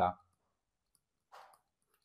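Near silence between words, broken about one and a half seconds in by one faint, brief tap of a stylus on a tablet screen while a word is handwritten.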